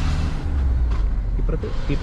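A car driving along a road, heard from inside: a steady low rumble of engine and road noise.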